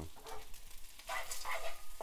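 Fried rice with corn sizzling in a hot frying pan, with a wooden spoon scraping and stirring it in the second half.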